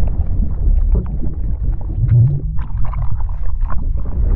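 Sound-effect bed of an animated logo intro: a deep, steady rumble with many short crackling, splash-like sounds scattered over it.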